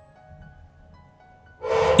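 Soft background music with faint held notes. Near the end a louder, breathy voice onset comes in as the narration starts again.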